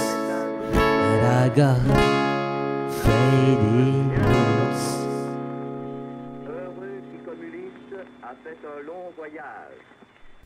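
Guitar chords strummed a few times, then a last chord left to ring and fade away over the second half: the instrumental close of a song.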